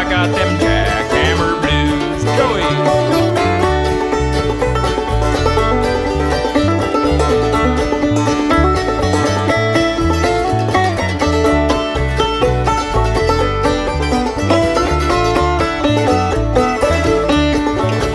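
Instrumental break of a bluegrass band: a five-string banjo to the fore over guitar, mandolin and bass keeping a steady rhythm.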